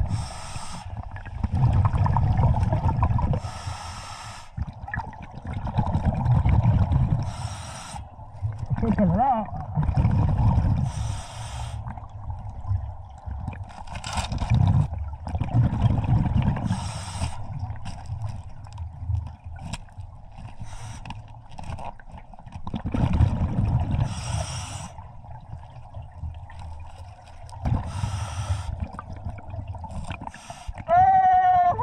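Scuba regulator breathing underwater, about six breaths. Each one is a short hissing inhale through the regulator followed by a longer rumbling gurgle of exhaled bubbles.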